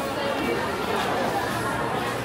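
Crowd chatter: many people's voices talking at once, overlapping into a steady babble in a busy indoor food court.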